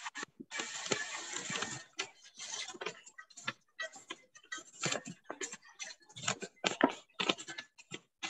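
Paper rustling and crinkling as origami paper is folded and handled, in irregular short bursts that cut in and out.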